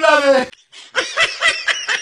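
A voice holding a drawn-out cry that breaks off about half a second in, then a burst of quick laughter, several short 'ha' pulses a second.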